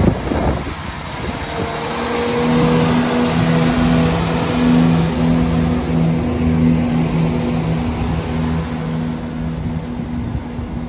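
A Class 170 Turbostar diesel multiple unit runs past close by. The underfloor diesel engines give a steady low two-note hum, over the rumble of its wheels on the rails.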